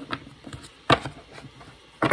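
Tarot cards being shuffled by hand: short clicks and taps of the card deck, with one sharp snap of the cards a little under a second in.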